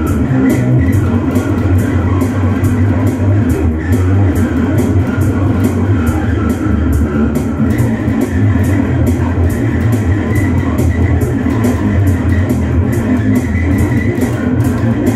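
Electric bass guitar played with the fingers, a heavy rock line, over a backing track with a steady drum and cymbal beat and guitar.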